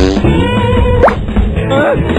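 Cartoon sound effects over background music: a fast rising whistle-like glide with a sharp pop about a second in, then a short wavering squeak near the end.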